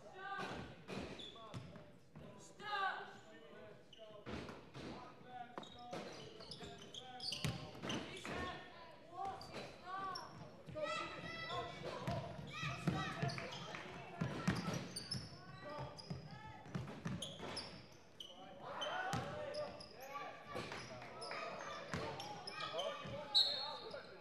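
A basketball being dribbled and bounced on a wooden sports-hall floor during play, in a series of sharp thuds, with players' shouts and calls. The sound echoes in a large hall.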